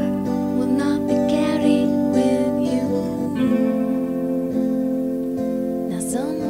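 Acoustic guitar strumming in an instrumental stretch of a song demo, with a brief sung or gliding line about a second and a half in.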